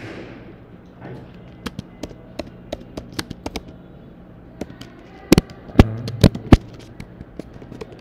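Computer keyboard typing: irregular, quick key clicks, with four much louder keystrokes a little past the middle.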